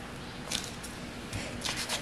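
A child's crayon scratching across a paper worksheet as she traces a wavy line, in a few short strokes, one near the start and a cluster in the second half.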